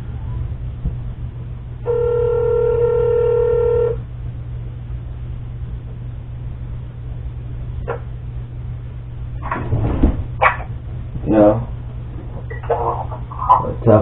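A telephone ringback tone rings once, steady for about two seconds, as a call is placed. Voices start a few seconds later, over a steady low hum.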